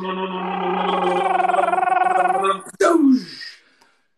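Vocal drum roll: a man's voice holds a rolled, fluttering trill for nearly three seconds. It ends with a sharp click and a quick downward swoop of the voice, followed by a short laugh.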